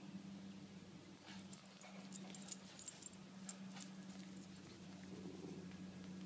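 Faint sounds of a small Pomeranian–Keeshond mix dog leaping at a rope toy, with light metallic jingling and ticking about two to four seconds in.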